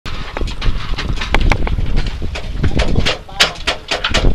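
Wind buffeting the microphone in a heavy, uneven rumble, with a slack sailboat mainsail flapping and snapping in many short, irregular cracks. Faint voices come in near the end.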